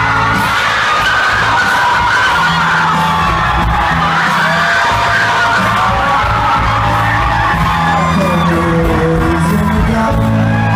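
A rock band playing live on electric guitar, bass guitar and drums, with sustained, bending guitar or vocal lines over a steady bass, and some crowd noise.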